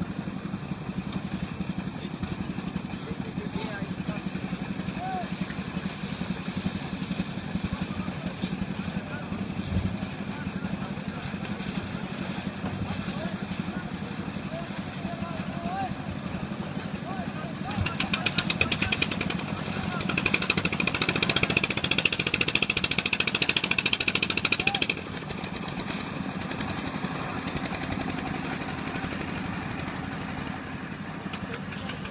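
Small engine of a concrete mixer running steadily while a roof slab is poured, with a louder, fast rattling stretch of several seconds in the middle. Faint voices underneath.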